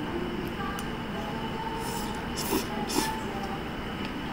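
Steady restaurant background noise at a table, with a few brief sharp noises about two to three seconds in as noodles are eaten with chopsticks.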